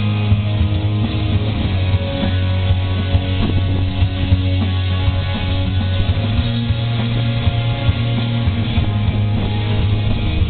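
Rock band playing live through a PA: electric guitar and drums over a heavy, sustained low end, loud and steady throughout.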